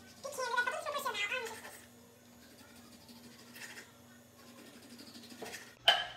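A woman's wordless, high-pitched vocalising with a wavering pitch for about a second and a half, then quiet with a faint steady hum, and a sharp click near the end.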